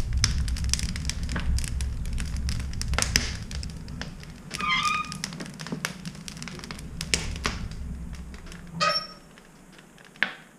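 Wood fire crackling and rumbling in the open firebox of an Englander wood stove, with many sharp pops, freshly loaded with split logs. Near the end the stove door shuts with a brief metallic squeak and clank, and the fire's low rumble drops away.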